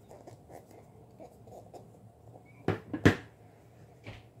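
A Stampin' Pad ink pad's plastic case is handled with faint rustles, then clacks sharply twice, about half a second apart, as it is snapped shut and set down on the table.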